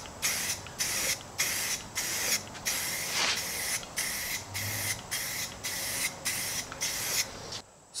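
Aerosol can of Rust-Oleum gloss enamel spray paint, fired through a snap-on trigger handle, hissing in short, even bursts about two a second as the trigger is pulled and released on each pass. The spraying stops shortly before the end.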